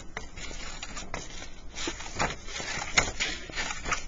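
Scissors snipping short slits into construction paper, several crisp snips roughly a second apart.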